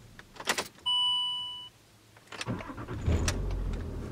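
A manual Land Rover Discovery's engine is switched off, a single steady dashboard chime sounds for just under a second, and then the starter cranks and the engine fires up again and runs at idle, restarted so the recalibrated gear indicator can take effect.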